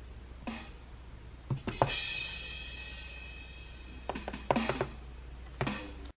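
Drum-kit samples from a drum-pad app on an iPad, tapped by finger in a short rhythm. A single hit, then three close hits with a crash that rings on for about two seconds, then a quicker run of about five hits and one last hit near the end.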